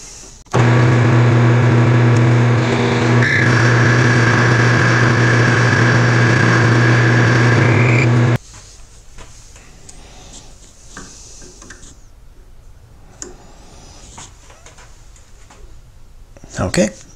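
Metal lathe running with a steady hum and whine while a parting tool cuts a thread relief into the shank. It starts about half a second in and cuts off suddenly about eight seconds in, leaving only faint handling sounds.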